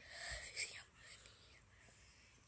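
A person whispering for about a second.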